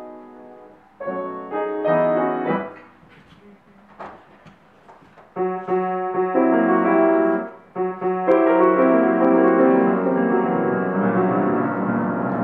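Grand piano played in short phrases: chords and notes that stop and start, with a pause of about two seconds near the middle, then a continuous passage from about two-thirds of the way in.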